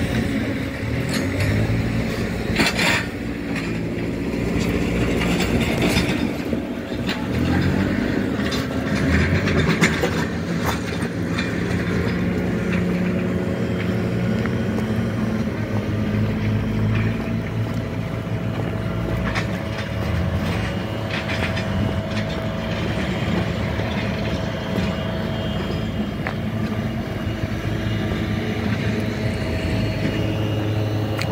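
A vehicle engine running steadily, a low hum whose pitch drifts a little, with a few scattered knocks.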